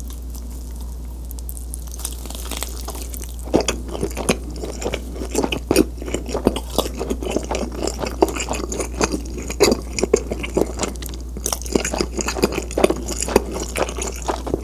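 Close-miked chewing of cheese pizza: wet, sticky mouth sounds and crunchy bites of crust. It starts soft, then about three and a half seconds in becomes a dense run of chewing clicks and smacks. A steady low hum runs underneath.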